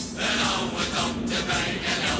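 NS ICM (Koploper) electric intercity train pulling out of the platform: a steady hum with several higher whining tones coming and going over it, the sound of the train's traction motors and wheels as it gathers speed.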